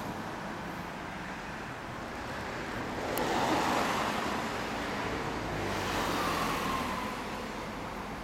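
Road traffic: vehicles passing on the street, one swelling past about three to four seconds in and another around six seconds, the second with a faint falling whine.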